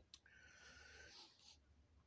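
Near silence, with a faint breath drawn in for about a second.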